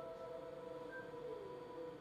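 Sustained ringing musical tones hold steady, and a lower tone begins sliding slowly downward in pitch a little past halfway through.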